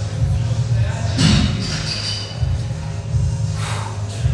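Background music with a heavy, pulsing bass beat. A brief, sharper sound stands out about a second in.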